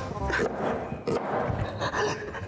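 A man whimpering and sobbing in a cry.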